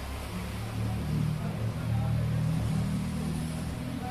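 A low, droning engine hum that swells about a second in and eases off near the end.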